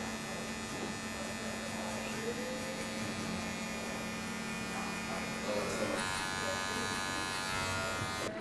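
Electric hair clipper fitted with a half guard, buzzing steadily as it runs through short hair at the side of the head to polish out weight lines in a fade. About six seconds in the buzz gets a little louder and brighter.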